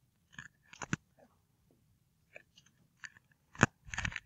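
A scatter of small, sharp clicks and crinkles of handling noise, with the sharpest click a little past three and a half seconds in.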